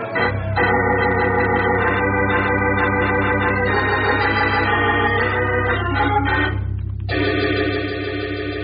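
Organ music bridge of sustained chords, marking a scene change in the radio drama. The chord shifts about four seconds in and breaks off briefly near seven seconds before a last held chord.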